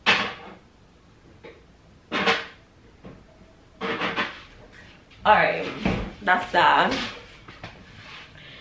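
A few sharp knocks and clatters from kitchen containers and fittings being handled, spaced a second or two apart. In the second half a woman's voice is heard for a couple of seconds.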